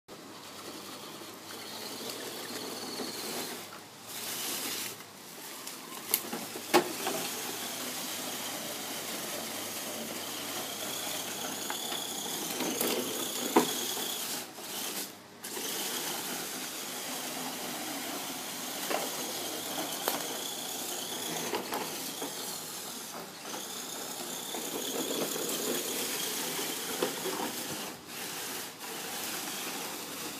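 Axial SCX10 electric RC crawler running, its motor and gears whining and rising and falling in pitch with the throttle, with dry leaves rustling throughout. A few sharp clicks, the loudest about halfway through.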